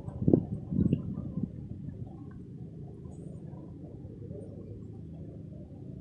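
Steady low rumbling outdoor background noise, with a few louder low bursts in the first second and a half.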